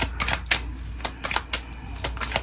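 A deck of tarot cards being shuffled by hand: a quick, uneven run of soft clicks and flicks as the cards slide and slap together.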